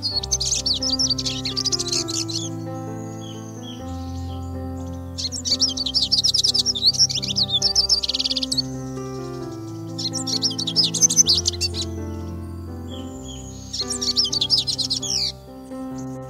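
Siskins singing in four bouts of rapid, high twittering song, each a couple of seconds long, over slow background music of long held notes.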